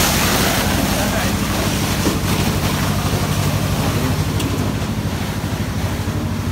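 Steady low engine hum with a constant pitch, under wind rushing on the microphone.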